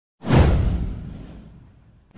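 A whoosh sound effect with a deep low boom, starting about a fifth of a second in. Its sweep falls in pitch and it fades away over about a second and a half.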